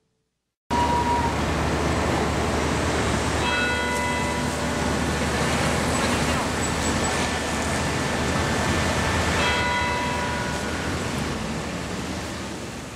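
Busy road traffic noise with a steady low rumble, starting suddenly about a second in. A ringing tone sounds over it for about a second, twice: about four seconds in and again near ten seconds.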